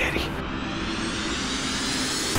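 A steady rushing whoosh of noise whose brightness slowly rises, an edited transition effect over faint background music.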